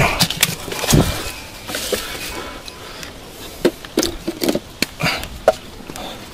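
Scattered knocks, scrapes and rustles of a person reaching into a narrow crevice between rocks, the handheld camera brushing against the stone. A series of short, sharp clicks comes in the second half.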